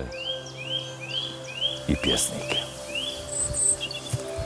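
A small bird calling a regular series of about eight short rising chirps, two or three a second, that stops near the end.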